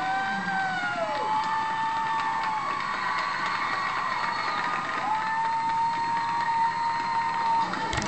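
Audience applauding and cheering, with long high whoops held over the steady clapping, one sliding down in pitch about a second in.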